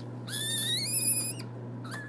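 Young red panda cub calling: one high-pitched call that rises steadily in pitch, starting about a quarter of a second in and lasting about a second before it cuts off abruptly. A steady low hum runs underneath.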